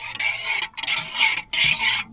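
Long-handled metal spoon stirring coffee in a metal camping pot, scraping around the inside of the pot in three long strokes.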